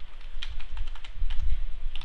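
Computer keyboard typing: quick, irregular keystrokes, a few a second.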